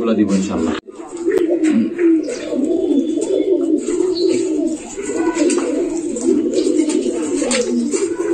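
Many domestic pigeons cooing together, a continuous chorus of overlapping low coos, with a sudden brief gap about a second in.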